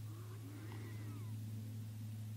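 A steady low hum, with a few faint gliding animal calls in the first second and a half.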